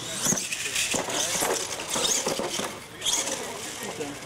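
Indistinct talking from people at the track, with a radio-controlled monster truck running on dirt underneath and a few short knocks.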